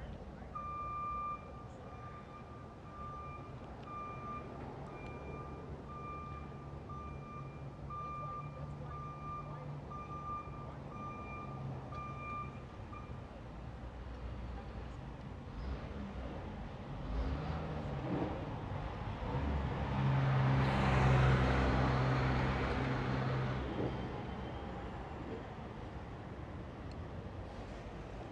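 A vehicle's reversing alarm beeping in an even, high-pitched pulse for about the first half, over the low running of an engine. Later a vehicle engine grows louder and goes by with a rush of noise, loudest about three quarters of the way through, then fades.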